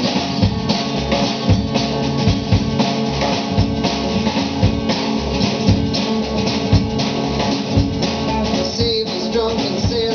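Live country-rock band playing: a drum kit keeping a steady beat under strummed acoustic guitar, electric guitar and upright bass.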